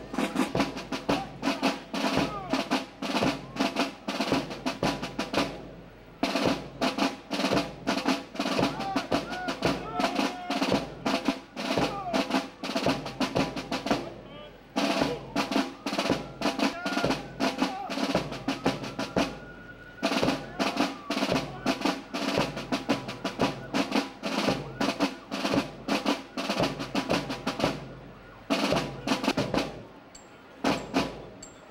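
Military band playing a march: rapid snare drum strokes and rolls under wind instruments, with short breaks between phrases.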